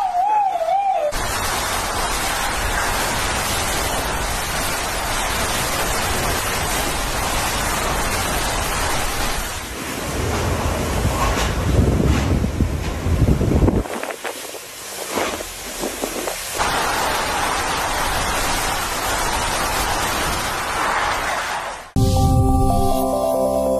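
Hurricane-force wind and rain: a loud, steady rushing noise, with heavy wind buffeting on the microphone in the middle and a short quieter stretch a little after.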